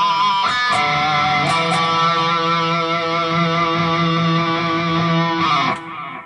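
ESP electric guitar playing a short single-note lead lick: a few quick notes, then a long held low E on the 7th fret of the A string that rings for about five seconds and stops sharply near the end.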